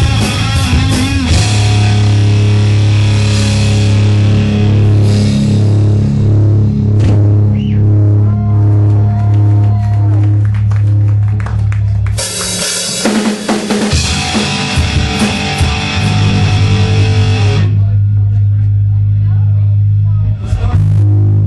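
Live rock band playing through amplifiers: electric guitars, bass guitar and drum kit, with held bass notes underneath. About twelve seconds in the sound thins out, then cymbals wash in for several seconds and drop away near the end, leaving the low notes ringing.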